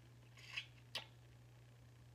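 Faint wet licking of a cigar-leaf blunt wrap: a short swish about half a second in, then a small lip click, over a low steady hum.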